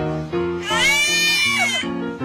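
A single high-pitched squeal, about a second long, that rises and then falls, over piano background music.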